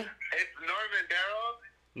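Speech only: a caller talking over a phone line.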